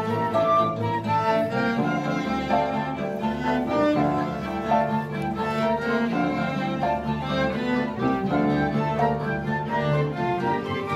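Student orchestra playing, with bowed strings (violins, cellos and double basses) to the fore alongside flutes, classical guitar and keyboard.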